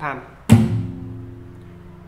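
Acoustic guitar fingerstyle percussive 'palm' technique: a single sharp palm slap on the strings together with a low F bass note on the sixth string (thumb on the first fret), about half a second in. The bass note then rings on, slowly fading.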